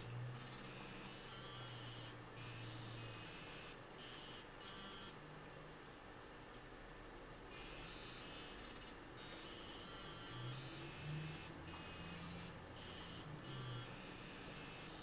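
Faint electronic buzzing tones that cut in and out abruptly at irregular intervals, over a low hum.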